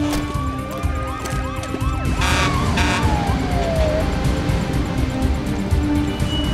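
Police sirens wailing and yelping over a tense dramatic music score. About halfway through, one long siren tone slides down in pitch, and two short horn blasts sound just before it.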